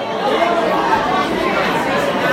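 A concert crowd's many overlapping voices, talking and calling out between songs in a club room.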